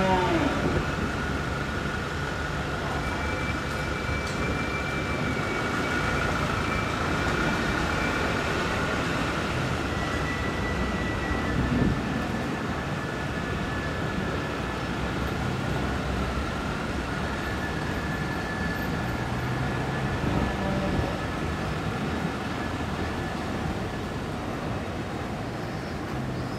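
Steady outdoor street ambience of a passing procession: a low, even hum and murmur with faint high tones held for several seconds at a time.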